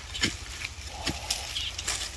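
A long-handled digging tool striking and scraping hard, dry earth, giving several irregular sharp knocks.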